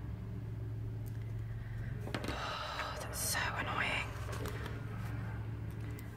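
Soft rustling and handling of a paper sticker sheet and planner pages, with a brief sharper paper rustle about three seconds in, over a steady low hum.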